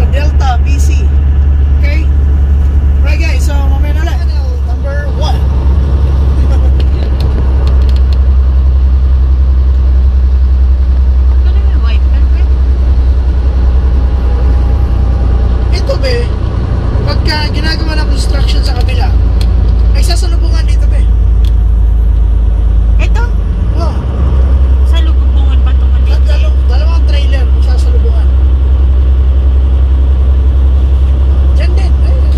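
Steady low drone of a semi-truck's engine and road noise heard inside the cab, with voices talking at intervals over it.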